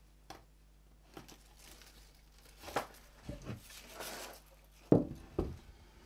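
Hands working a self-adhesive strip along the inside of a wooden frame: rustling and crinkling of the strip and its backing, with scattered light clicks, then two sharp knocks about half a second apart near the end.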